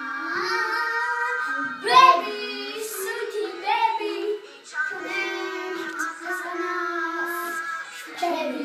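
Young children singing a song together in high voices, holding long notes, with a short break about halfway through.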